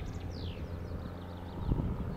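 Distant single-engine light aircraft's steady low drone as it flies away, with wind buffeting the microphone in gusts. Birds chirp in quick high notes over it, with one falling whistle about half a second in.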